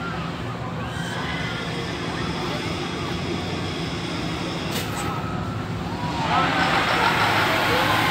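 Drop-tower ride machinery with a steady low hum and people's voices. A sharp click comes a little before five seconds. About six seconds in, a louder rushing hiss starts as the gondola of seated riders begins to rise up the tower.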